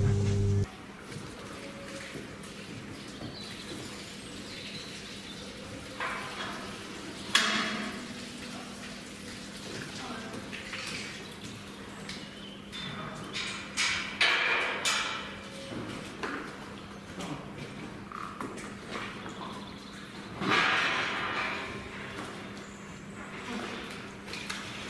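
A loud steady hum stops abruptly just after the start. Cattle-shed ambience follows, with a faint low hum and scattered knocks, clatters and short noisy bursts as a cow is moved through the pens.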